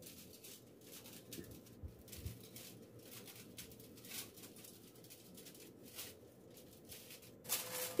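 Faint, scattered crinkles and rustles of aluminium foil as hands roll and press a soft date-and-nut log in shredded coconut.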